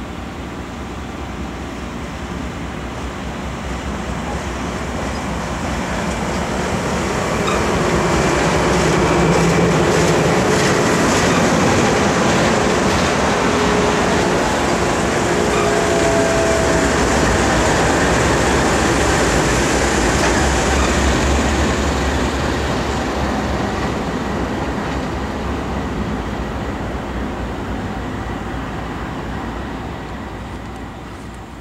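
A train passing at close range, led by a maroon passenger car, with a Norfolk Southern diesel locomotive going by. The rumble and wheel clatter build to a peak through the middle and fade toward the end, with the locomotive's low engine drone strongest about two-thirds of the way through.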